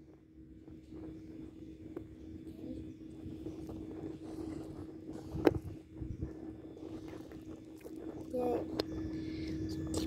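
Faint scraping and tapping of a wooden dig stick and fingers on a wet plaster excavation block, with one sharp knock about halfway through, over a steady low hum.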